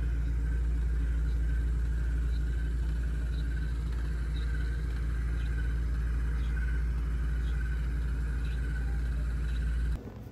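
The roller handpiece of a body-contouring massage machine, running with a steady low hum, a faint wavering whine above it, and a faint tick about once a second.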